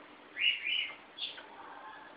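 An African grey parrot making short whistled chirps: two quick arched notes, then a single higher note a little over a second in.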